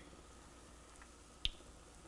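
A quiet kitchen with a single short, sharp click about a second and a half in.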